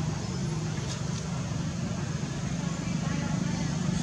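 Indistinct voices over a steady low hum, with no clear words.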